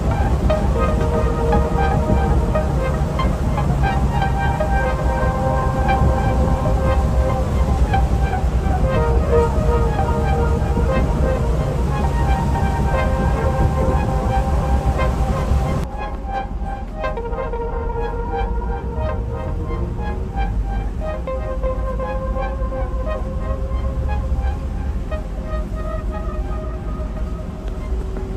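Background music with a melodic line over the steady low rumble of a bus driving. About 16 seconds in, the sound changes abruptly and becomes quieter and duller, while the music carries on.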